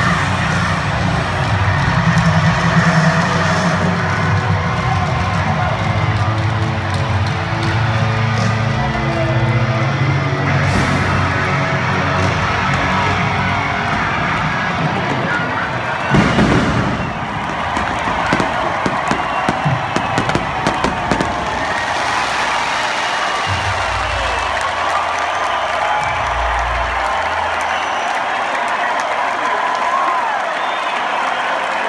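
Live rock band playing loud over a stadium crowd. About sixteen seconds in, pyrotechnics go off with a loud bang, followed by a few seconds of sharp cracks, while the crowd cheers and the band holds its closing chords.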